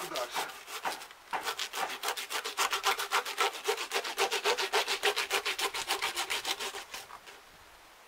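Hand saw cutting through the body of a large silver carp in fast, even back-and-forth strokes, about seven a second. The strokes start unevenly, settle into a steady rhythm, and stop about a second before the end.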